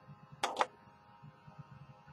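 A woman's short breathy laugh: two quick puffs of breath about half a second in, then faint room tone.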